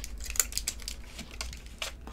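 Small irregular clicks and crinkles of a plastic-and-foil gum blister pack being handled in the hands.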